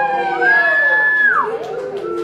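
A small child's voice amplified through a handheld microphone: a long, high-pitched wordless call held steady for about a second, then sliding down in pitch. Lower babbling follows near the end.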